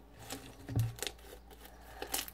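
Fluffy slime being handled: soft sticky crackles and small squelches as it is pressed and pulled between the hands, with a soft thump just under a second in.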